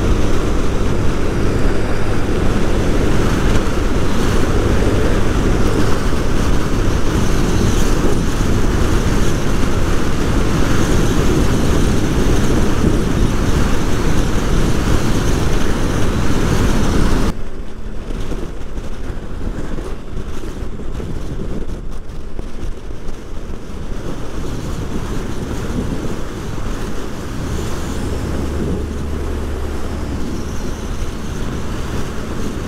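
Motorcycle cruising at highway speed: a steady engine note under heavy wind rush on the microphone. About two-thirds of the way through, the wind noise drops suddenly and the sound turns quieter and duller.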